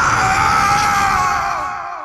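A long, drawn-out scream held on one pitch over a rushing blast effect, sagging in pitch and fading out near the end.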